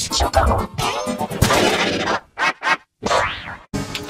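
Heavily processed audio: several pitch-shifted, layered copies of a film clip's sound that merge into a warbling, chord-like, music-like wash. In the second half it breaks into short choppy bursts with brief dropouts to silence.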